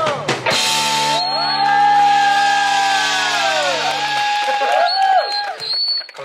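Live rock band of electric guitars, bass and drums hitting a final chord and letting it ring for about three and a half seconds, with bending, wavering guitar notes over it, then fading out near the end: the close of a song.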